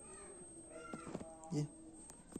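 A few short animal calls, each rising and falling in pitch, in the first second, then a man says a couple of words.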